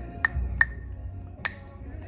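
Three sharp wooden knocks with a short ringing tone, the second about a third of a second after the first and the third nearly a second later, from wooden kubb throwing sticks. A low rumble of wind on the microphone runs underneath.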